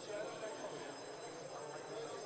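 Indistinct murmur of distant voices in a large hall, with no clear words, over a faint steady high-pitched whine.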